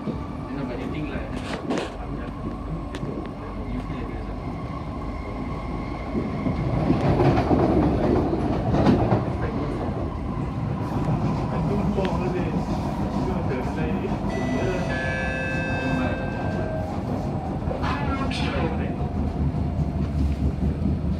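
Inside an SMRT C151A metro train running along the track: a steady rumble of the wheels on the rails that swells for a few seconds about a third of the way in. A few brief high tones ring out about three-quarters through.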